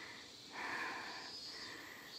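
Cicadas singing, a steady high buzz with a lower band that swells and fades about once a second.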